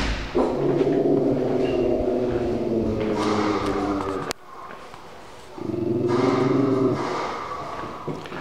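A dog in a wire crate howling in two long, steady, drawn-out calls. The first lasts about four seconds and the second, after a short break, about two.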